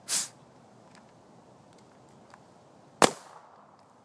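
Smart Parts Shocker SFT paintball marker running on a nearly empty air tank. A short hissing puff of gas comes at the very start, and a single sharp shot about three seconds in is the loudest sound.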